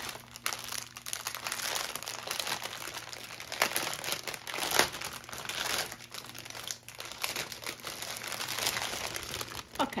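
Clear plastic wrapping around a bundle of diamond-painting drill bags crinkling and crackling as hands squeeze and turn it, in irregular bursts of rustle. A sharp crackle about five seconds in is the loudest moment.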